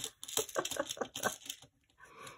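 Small decorative gems clicking and rattling against each other and their tray as fingers pick through them, a quick run of light clicks that stops about a second and a half in.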